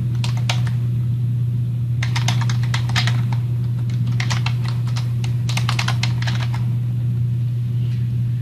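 Computer keyboard typing in several short bursts of keystrokes, over a steady low hum.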